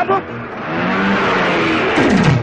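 A rushing noise swelling up over about a second and holding, with faint low held tones beneath it, leading into drum-led film music.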